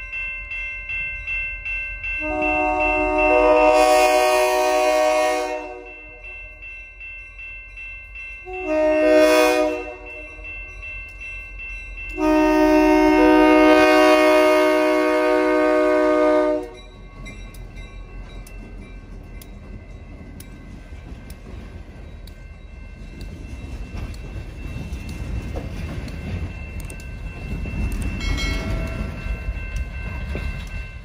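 Diesel locomotive's multi-chime air horn sounding long, short, long blasts, the warning for a road crossing, over a crossing bell ringing steadily. After the last blast the locomotive and its freight cars rumble past, growing louder near the end.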